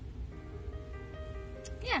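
Music playing softly through a car stereo's speakers from a smartphone via an FM transmitter, starting about a third of a second in as steady held notes.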